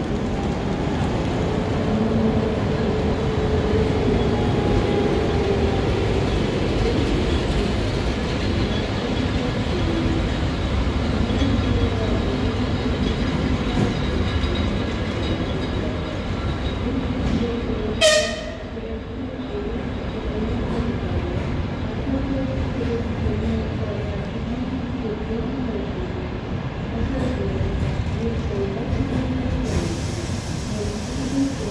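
ČS8 electric locomotive and its passenger train rolling slowly past as it departs, with a steady rumble of wheels on rails. About eighteen seconds in comes one brief, sharp high-pitched squeal, the loudest moment.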